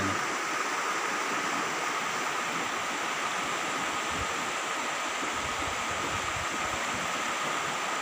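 Muddy floodwater of a river in spate rushing past in a steady, even noise; the river is flooding and still rising.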